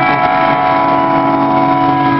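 Punk rock band playing live: loud distorted electric guitars hold a sustained chord, with a new chord struck right at the start.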